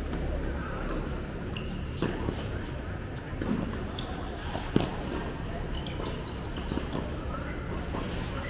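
Tennis balls struck by rackets and bouncing during a doubles rally: a few sharp, separate hits, the loudest a little past halfway.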